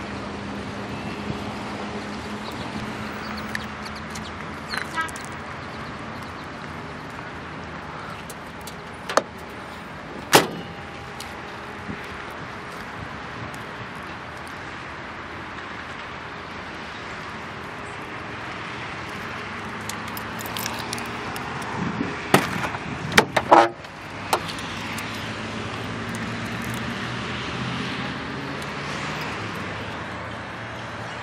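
A 2005 GAZ-31105 Volga's trunk lid shut with a sharp bang about ten seconds in, then a car door latch clicking and the door knocking shut around two-thirds of the way through, over a steady low hum.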